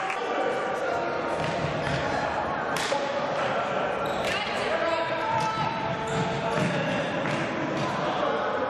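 Indoor hockey play echoing in a sports hall: repeated sharp knocks of hockey sticks striking the ball, the ball hitting the hard wooden floor, and players calling out.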